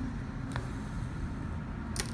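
Embroidery thread being drawn through linen fabric stretched in a hoop: a quiet pull over a steady low background hum, with a faint tick about a quarter of the way in and a sharper click at the very end.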